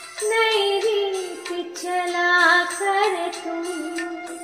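A woman singing a Raag Yaman ghazal melody in held, gliding notes over a karaoke backing track.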